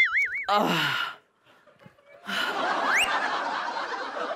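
A wavering comedy sound effect ends just after the start and a voice cries out, falling in pitch. After about a second of near silence, audience laughter comes in, with one quick rising whistle.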